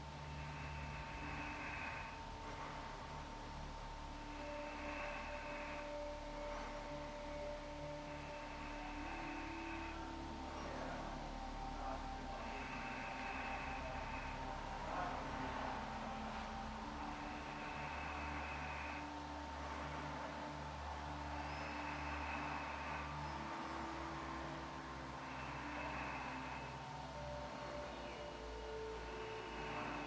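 Soft, slow background music of held notes over a steady drone, the lower notes changing every few seconds, with a soft swell recurring about every four seconds.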